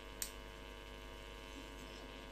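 Faint steady electrical hum with a light background hiss, the noise floor of the recording, with one short click shortly after the start.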